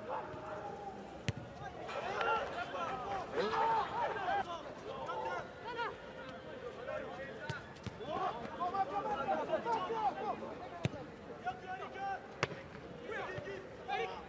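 Men's voices calling out across a football pitch, with several sharp thuds of a football being kicked.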